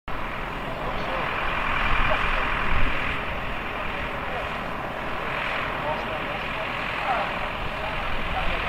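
Diesel engine of a Volvo military truck running steadily, with voices faintly in the background.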